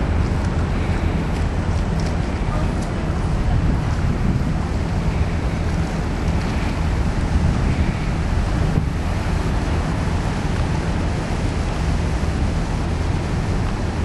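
Wind buffeting the camera microphone: a steady low rumble with a hiss over it.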